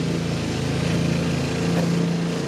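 Lawn mower engine running steadily at one even pitch, kind of loud.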